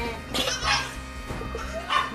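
Goats in a pen, one giving a short, harsh call about half a second in and another brief sound near the end, over steady background music.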